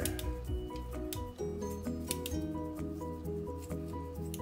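Background music, with kitchen scissors snipping raw bacon into small pieces several times over it.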